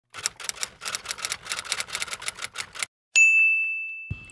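Typewriter sound effect: rapid key clicks, about six a second, for nearly three seconds, then a single bell ding about three seconds in that rings on as it fades.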